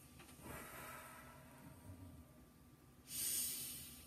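A woman taking a slow, deep conscious breath: a long, soft in-breath, then a louder, shorter breath out about three seconds in.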